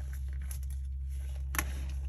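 Faint handling of a pistol slide and a small set screw with gloved hands: a few light clicks, one sharper about a second and a half in, over a steady low electrical hum.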